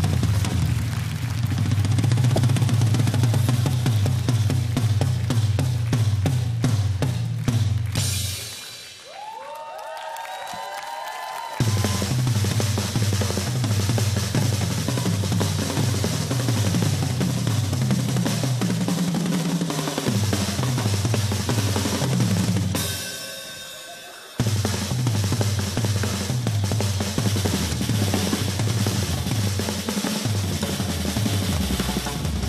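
Several drum kits played together at once: fast, dense rolls across toms, bass drums and snares, with cymbals. The drumming breaks off about a third of the way in for roughly three seconds, with a faint sliding tone in the gap. It stops again for about a second and a half two thirds of the way in before starting up again.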